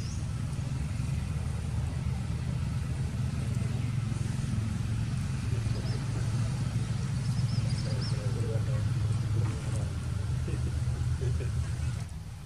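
A motor vehicle engine running steadily nearby, heard as a continuous low rumble, with a few faint high chirps around the middle.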